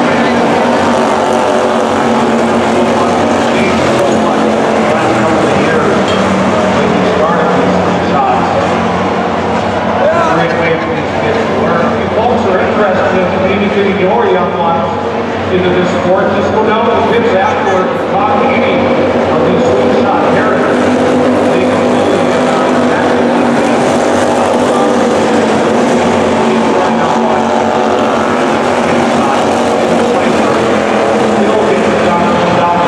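Slingshot race car engines running on a dirt oval during a race, rising and falling in pitch as the cars rev and pass, with indistinct voices mixed in.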